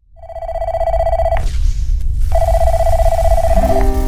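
A telephone ringing twice, each ring lasting over a second, as the sound effect that opens a song. Music comes in just as the second ring ends.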